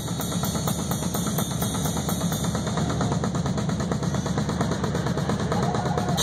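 Drum kit played live in a solo: a fast, even roll of many strokes a second, with a heavy low end.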